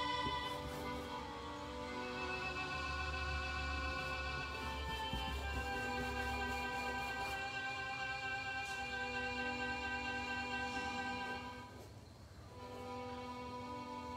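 Slow instrumental background music of long held notes that change every couple of seconds, briefly dropping away about twelve seconds in before resuming.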